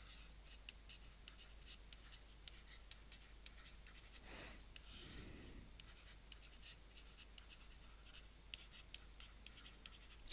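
Faint stylus scratching and tapping on a pen tablet as words are handwritten, heard as many small ticks, with a soft noisy patch about four seconds in.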